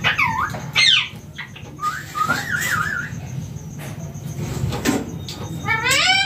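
Indian ringneck parakeet calling: two sharp, falling squawks in the first second, then a wavering, warbling whistle about two seconds in, and another rising call starting near the end.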